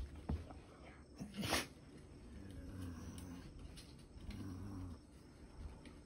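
Basset hound shaking her head, long ears flapping in one loud burst about a second and a half in. She then makes two low, drawn-out grumbling sounds as she rolls onto her back on a carpet.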